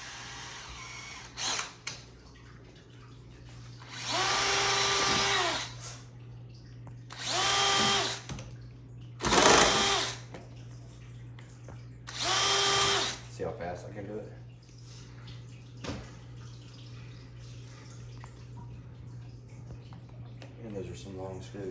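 Cordless drill with a small bit drilling pilot holes for screws into the plastic wall of an ammo can, run in four short bursts of about a second each that spin up and wind down, the third sounding rougher.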